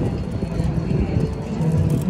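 Busy city street sound: a steady low rumble of road traffic with passers-by talking, and background music.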